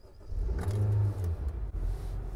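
Car engine starting, heard from inside the cabin: it catches about half a second in, flares up briefly, then settles to a steady low idle.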